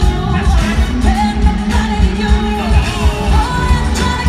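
Live pop concert music played through a stadium sound system: a woman sings lead over a full band with a heavy, pulsing bass beat.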